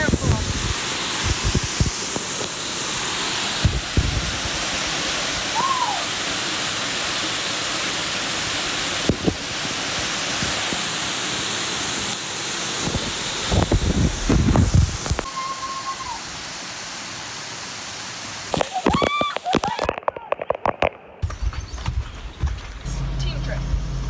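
Waterfall: a steady rush of falling and splashing water, with a few brief voices and knocks. It cuts off suddenly near the end, and a vehicle engine idles steadily.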